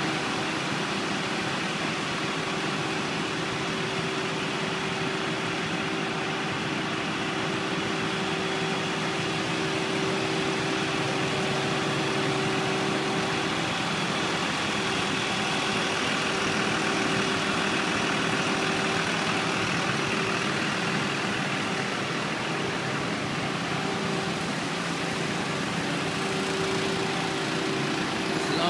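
Engine-driven pumping equipment running at a steady pitch with a constant hum, pumping floodwater out of a flooded building.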